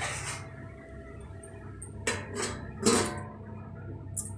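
Steel utensils clattering: a steel plate being handled and set as a lid over a steel kadhai, with four sharp metallic knocks, the loudest about three seconds in. A steady low hum runs underneath.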